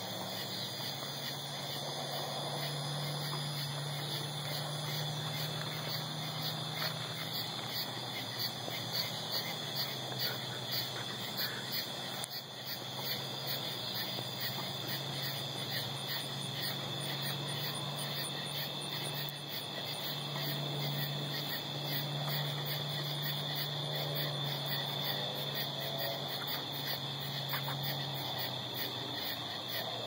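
Night insect chorus: crickets chirping in a steady, evenly pulsing high trill, with a low steady hum underneath.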